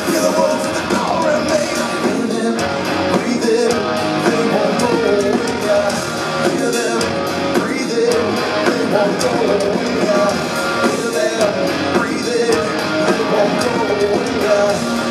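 Live rock band playing: electric guitars, bass guitar and a drum kit keeping a steady beat.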